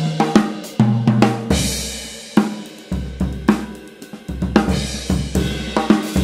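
Yamaha Birch Custom Absolute drum kit played in a groove with fills. Bass drum, snare and tom strokes run under the wash of Zildjian K Constantinople cymbals, with a cymbal crash ringing out about one and a half seconds in.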